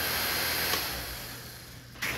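Electric cooling fans on a riding lawnmower's add-on oil and hydraulic coolers, running with a steady whir that dies away over the second half.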